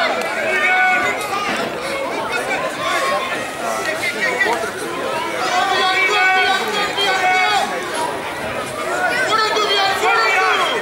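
Several voices shouting and calling over one another, with no break, as spectators and players yell during a rugby game.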